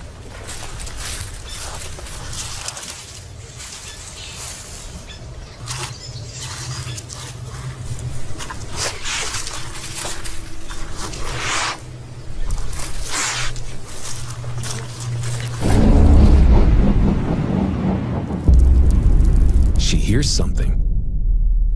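Honey badger sniffing and blowing short puffs into a burrow in sand, with scuffing, over a low steady drone. A much louder low rumble comes in about three-quarters of the way through.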